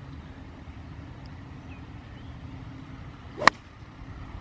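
A golf iron strikes the ball once: a single sharp click about three and a half seconds in, over a low steady hum.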